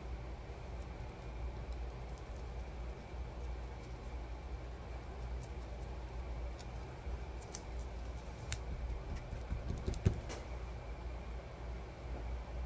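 Paintbrush dabbing and scrubbing paint on paper, a soft rubbing with light ticks, over a steady low hum; a short knock comes about ten seconds in.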